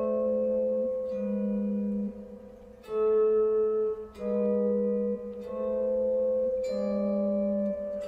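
Electric guitar played slowly in two voices: a low bass note held under single melody notes that change about once a second. The bass note shifts to outline A minor and E7.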